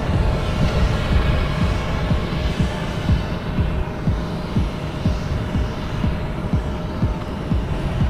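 Wind buffeting the microphone in irregular low rumbles, over a steady hum of jet aircraft noise with a faint constant whine.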